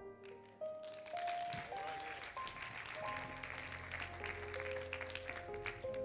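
Soft keyboard music of held notes that step from pitch to pitch, with a congregation applauding from about half a second in.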